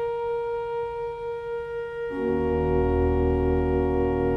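Pipe organ playing slow, sustained music: one note held for about two seconds, then a fuller chord with deep bass notes coming in.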